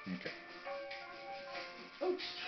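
Background music with long held notes, under a single spoken 'okay' at the start.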